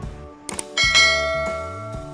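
Subscribe-button animation sound effect: a couple of quick clicks about half a second in, then a bright bell ding that rings on and fades away over about a second.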